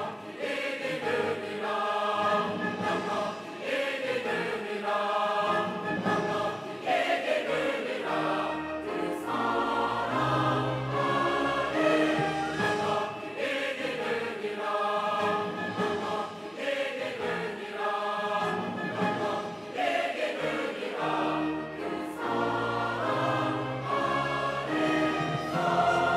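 Large mixed choir of men and women singing a Korean sacred anthem in full voice, accompanied by an orchestra.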